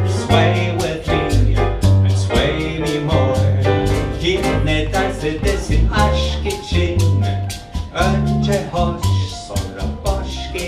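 Live Latin-rhythm jazz: double bass and piano play a pulsing accompaniment with a steady rhythm of crisp ticks, and a male voice sings at times.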